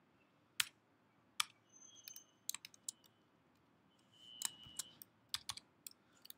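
Typing on a computer keyboard: two single keystrokes, then short quick runs of key clicks.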